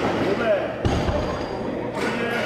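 Heavily loaded barbell with Eleiko rubber bumper plates set back down on the lifting platform after a pull, landing with one heavy thud a little under a second in.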